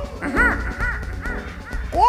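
Live reggae band playing, with a steady bass pulse, under a quick run of short wordless vocal calls that rise and fall in pitch, about two or three a second.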